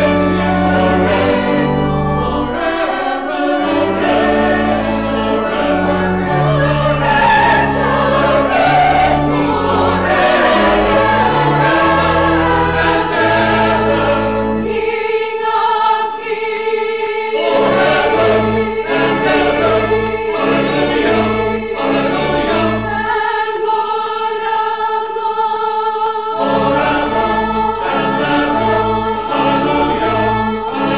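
Church choir singing with organ accompaniment. The low bass notes drop out twice, about halfway through and again a few seconds later, while a single note is held.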